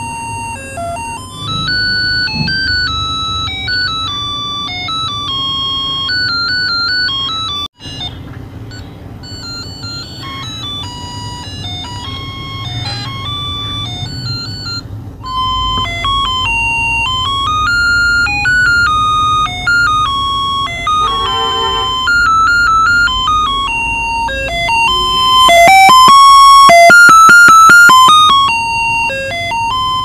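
A three-pin musical melody IC driving a small loudspeaker through a transistor, playing an electronic tune as a run of clean, stepping beeps. The tune cuts out for a moment about eight seconds in, and is loudest and buzzier for a few seconds near the end.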